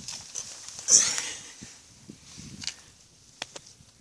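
Rustling and knocking as a handheld camera is pushed through leafy garden plants, loudest about a second in, with a few sharp clicks later.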